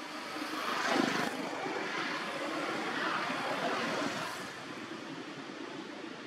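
A passing engine's rushing noise swells about a second in, holds, and fades away after about four seconds.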